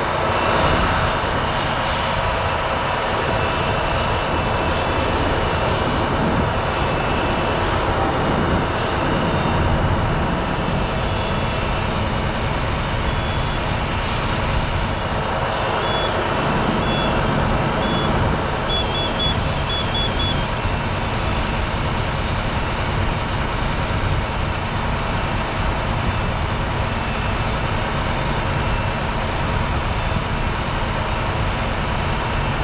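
A large vehicle engine running steadily at a fire scene, a constant drone, most likely the fire apparatus feeding the hose lines. About halfway, a handful of short high electronic beeps sound, ending in a quick run of them.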